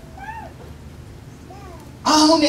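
Two faint, brief high-pitched cries, each rising and then falling in pitch, about a second apart, over a low steady hum.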